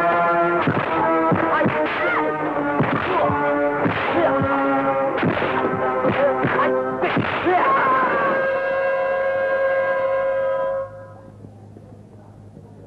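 Kung fu film soundtrack: a musical score of held notes under a fight, cut by sharp dubbed punch-and-whack sound effects, often in quick pairs. The hits stop about eight seconds in, and a last held note carries on and cuts off near eleven seconds.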